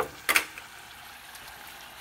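Corn tortilla shell frying in avocado oil in a saucepan, a steady sizzle, with two sharp clicks about a third of a second in.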